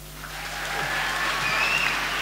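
Theatre audience applauding as a dance routine ends: the clapping starts about a quarter second in and swells.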